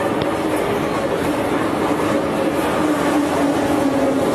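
Metro train running in a station: a steady loud rumble with a faint motor whine that slowly falls in pitch.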